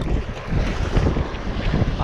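Wind buffeting the microphone, over waves washing up the beach.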